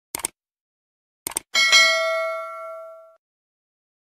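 Subscribe-button animation sound effect: two quick mouse clicks, then two more clicks and a notification-bell ding that rings out and fades over about a second and a half.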